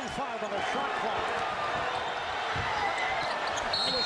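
Arena crowd noise from the game broadcast, with a basketball being dribbled on the hardwood court. A short, high referee's whistle sounds near the end.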